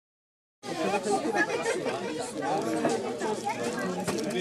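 Many children and adults chattering at once, overlapping voices with no one voice standing out. The sound cuts in abruptly about half a second in, after a moment of dead silence.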